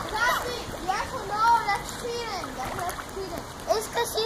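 Children's voices calling out and chattering, with water splashing in a swimming pool.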